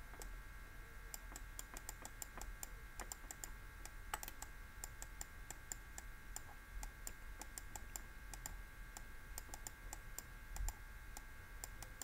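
Faint, irregular clicks and taps from handwriting being entered on a computer, several a second, over a faint steady electrical hum, with a soft low bump near the end.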